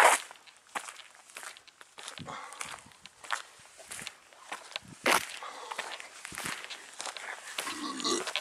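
Footsteps of a person walking, heard as irregular knocks and scuffs, with a sharper knock at the start and another about five seconds in.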